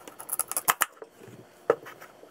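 Chef's knife cutting through a raw, peeled sweet potato on a cutting board: a quick run of crisp cuts and knocks of the blade on the board in the first second, then one sharp knock near the end.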